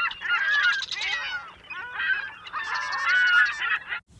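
A flock of birds calling, many calls overlapping at once, thinning briefly about halfway through before filling in again.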